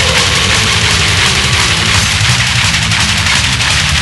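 Black/death metal played at a steady, loud level: dense distorted guitars and drums with a heavy low end.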